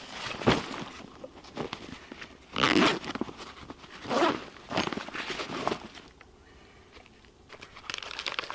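A nylon gear pouch being handled and opened, a series of short, noisy rips and rustles as its flap and fasteners are pulled. The loudest comes about three seconds in, and it goes quieter for a second or two near the end.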